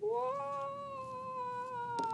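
A cat giving one long meow that rises at the start, holds steady for about two seconds and drops off at the end.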